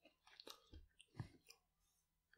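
Near silence: room tone with a few faint, short clicks and small noises, the loudest a little over a second in.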